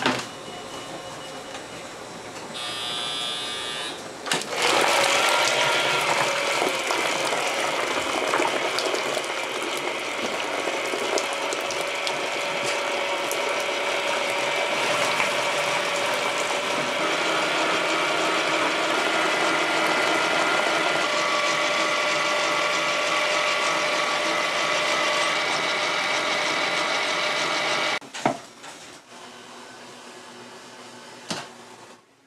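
Old electric stand mixer with twin wire beaters creaming a bowl of butter: the motor and gears run with a steady whine, starting about four seconds in and stopping suddenly near the end.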